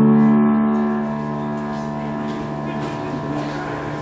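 Piano chord held and slowly dying away, its several notes ringing together.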